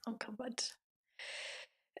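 A few short, soft voice sounds, then a brief audible intake of breath about a second and a half in, just before speech resumes.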